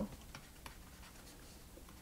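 Stylus writing on a tablet screen: a few faint taps and scratches.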